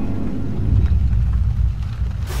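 A deep, low rumble that swells about half a second in.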